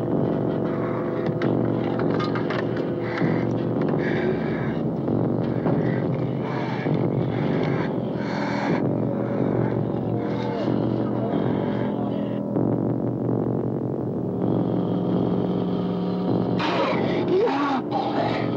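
Dramatic film score of long held tones, with scattered crackles from a burning truck under it.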